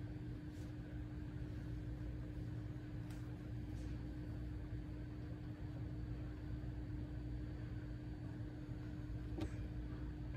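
Steady low hum with a constant pitched tone, unchanging throughout, with a few faint clicks, one near the end.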